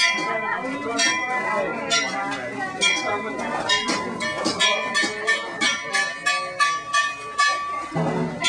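A struck metal object clanking again and again, the strikes coming faster from about three seconds in, over the murmur of a crowd.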